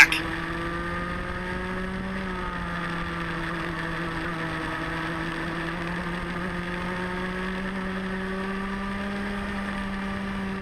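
Rotax Mini Max two-stroke kart engine at race speed, its note climbing for about two seconds, easing slightly, then climbing slowly again.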